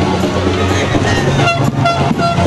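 Loud, steady horn-like tones, with a few short, higher toots about one and a half seconds in.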